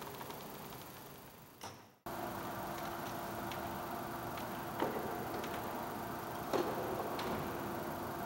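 Quiet room tone between pieces: a faint steady hum with a few light clicks. The sound fades and drops out briefly about two seconds in, then resumes.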